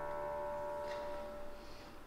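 The last chord of the closing keyboard music dying away in a reverberant church, with one higher note lingering until near the end and a faint click about a second in.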